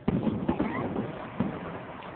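Aerial fireworks shells bursting in the distance: a sharp bang right at the start, another about half a second in and a third about a second and a half in, with rumbling noise between them.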